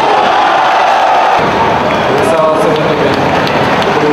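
Stadium crowd shouting and cheering loudly as a Muay Thai fighter goes down on the canvas, many voices at once.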